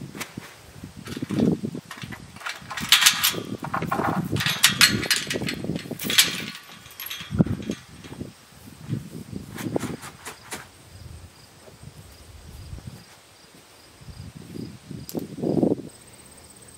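Metal tube pasture gate and a plastic feed tub being handled: a quick run of sharp clanks and rattles in the first half, thinning to a few knocks and then quieter shuffling.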